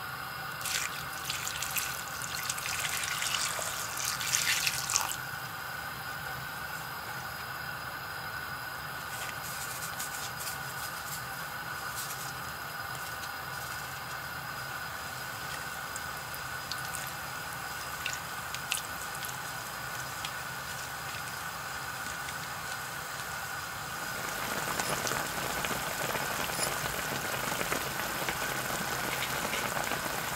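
Liquid poured in a steady thin stream into a pot of raw vegetables and bulgogi beef. About 24 seconds in, it gives way to a fuller, louder bubbling as the beef hot pot boils.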